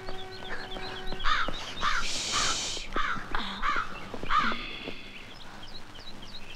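Crows cawing, a run of about six caws over a few seconds, with smaller birds chirping faintly behind them.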